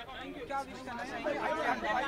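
Indistinct chatter: several people talking at once, no clear words.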